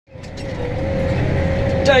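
Case Maxxum 125 tractor running steadily under load while pulling a stubble cultivator, heard from inside the cab as a low engine drone with a constant faint whine. The sound fades in over the first moment.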